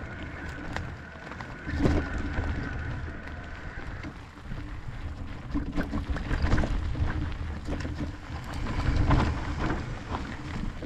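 E-mountain bike rolling downhill over a dirt forest singletrail: a steady low rumble of tyres and wind on the camera's microphone, with frequent knocks and rattles as the bike goes over bumps. A thin steady whine runs through the first few seconds.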